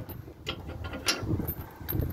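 Steel trailer safety chains rattling and clinking as they are handled and crossed under the trailer tongue, with a few sharp metal-on-metal clinks spread through the two seconds.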